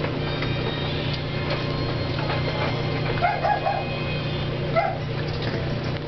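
Shetland sheepdog puppies giving short, high yips while play-fighting: three quick ones a little past the middle and one more near the end, over a steady low hum.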